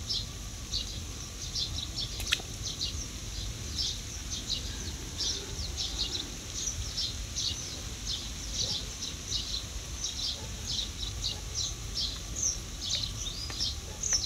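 Small birds chirping rapidly and irregularly in short high notes over a low steady rumble, with one sharp click about two seconds in.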